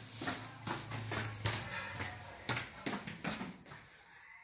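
Footsteps going down a steep flight of stairs, an irregular series of short knocks, with a low hum underneath for the first second and a half.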